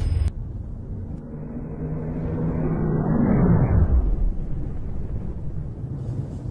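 Rocket engine rumbling at launch: a deep noise that swells to its loudest about three seconds in and then eases off.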